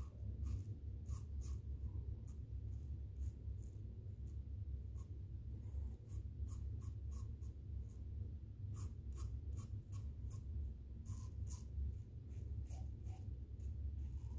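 Double-edge safety razor with an Astra blade scraping through lathered stubble in short strokes, several a second with brief pauses between runs, over a steady low hum.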